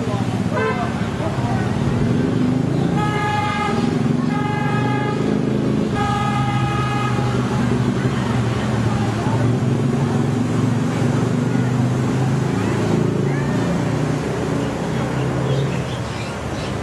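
A horn tooting three times, each blast about a second long, a little after the start, over a steady murmur of crowd voices.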